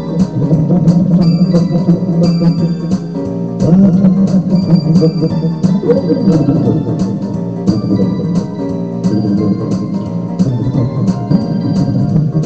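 Instrumental music: an electronic organ-style keyboard playing sustained chords over a steady drum-machine beat.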